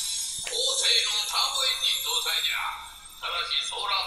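Audio of a subtitled anime episode playing back at low level: character dialogue in Japanese over background music, sounding thin with little low end.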